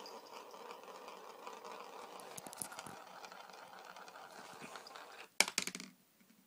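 Marble working its way through a plastic sand-wheel toy: a faint, steady rattle with small ticks for about five seconds, then a few loud plastic clatters near the end.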